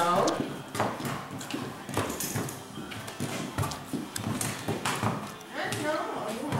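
A horse's hooves clopping in irregular steps on a concrete barn-aisle floor as it is led on a lead rope.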